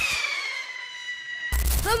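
A single high tone with overtones, gliding slowly down in pitch and fading over about a second and a half. A loud shout starts near the end.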